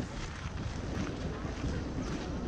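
Wind buffeting the microphone of a handheld camera: a steady low rumble over a noisy outdoor hiss.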